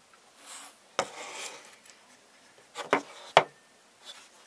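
Heavy all-metal Swingline stapler being handled and turned over: a sharp metal click about a second in followed by a short rattle, then two quick clicks and a louder single click near the end.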